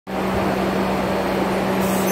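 Subway car interior noise: a steady hum over an even rush.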